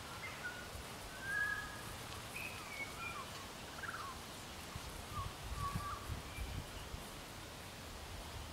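Birds singing in short whistled notes, some sliding down in pitch, over a steady outdoor hiss. A few soft low thuds come about five to six and a half seconds in.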